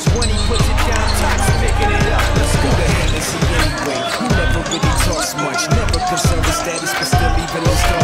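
Hip-hop backing track with heavy bass and a steady drum beat; the bass is held for about the first two seconds, then pulses with the beat.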